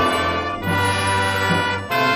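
A school band of brass, woodwinds and strings playing slow held notes together, the chord changing a few times.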